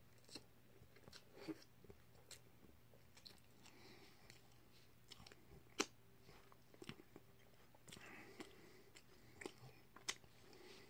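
Faint chewing of a mouthful of breakfast egg sandwich: quiet mouth sounds with scattered soft clicks, the sharpest about six seconds in.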